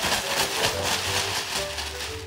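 Background music with a bass line, under a loud rustling noise from plastic-bagged clothing being tossed onto a pile.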